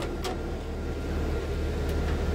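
A toolbox drawer pulled open on its slides, with a faint click a moment in and another near the end, over a steady low hum from the idling tool truck.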